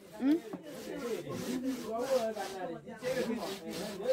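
Scratchy rubbing and handling noise on a handheld phone's microphone, with faint voices talking in the background.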